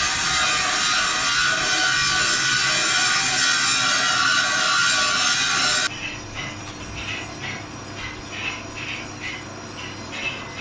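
For about the first six seconds, a loud, steady hissing workshop noise that cuts off suddenly. Then a steel scriber scratches marking lines into a steel plate along a square, in short even strokes about twice a second.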